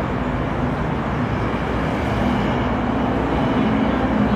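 Steady road-traffic noise: a continuous low vehicle rumble and hum with no distinct events.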